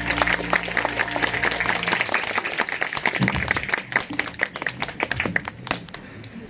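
Audience applauding, dense clapping that thins out toward the end, while the last low note of the accompaniment dies away in the first two seconds.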